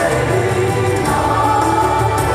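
A choir singing with a rock band in a rock opera. The voices hold long, sustained notes over a steady low accompaniment.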